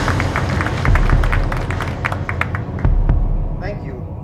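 Audience clapping that thins out over about three seconds, under a deep low rumble left over from the intro music.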